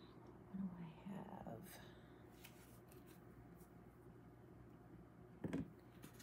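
Mostly quiet room: a faint murmured voice about a second in, then a single short knock near the end.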